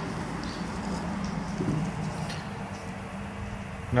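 Steady outdoor background noise with a low, even hum.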